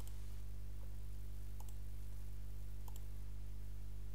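Computer mouse clicks, a few short sharp clicks with the two clearest about a second and a half and three seconds in, over a steady low electrical hum.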